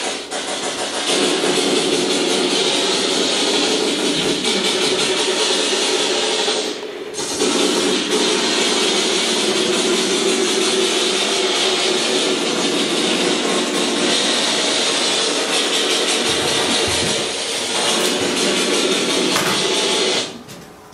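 A loud, steady mechanical rushing noise that cuts in abruptly, dips briefly about seven seconds in, and stops abruptly after about twenty seconds.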